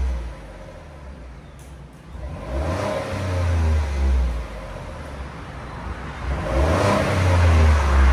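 A 2021 Ford F-150 Tremor's 3.5-litre EcoBoost twin-turbo V6 on its stock exhaust. It idles and is revved twice, once a few seconds in and again near the end, each rev falling back to idle. The engine sounds very quiet.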